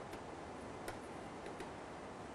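A stylus writing on a tablet screen: a few faint, irregular ticks over a steady low hiss.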